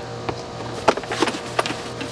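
Plastic booster seat base and cup holder being handled and tipped onto its side: a few light knocks and clicks, the sharpest about a second in.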